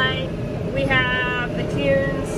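Tractor engine running steadily, heard from inside the cab, with a high voice-like sound in pitched, wavering phrases over it.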